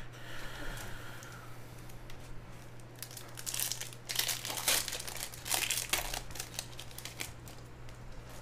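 Foil wrapper of a trading-card pack crinkling as it is handled and torn open, in a run of loud crackling bursts from about three to seven seconds in, with quieter card handling before and after.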